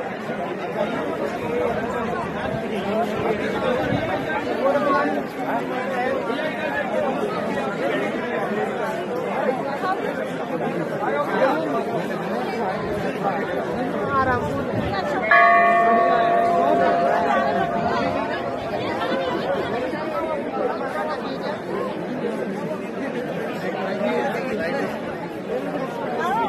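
Dense crowd chatter of pilgrims, with a temple bell struck once about fifteen seconds in and ringing on for several seconds as it fades.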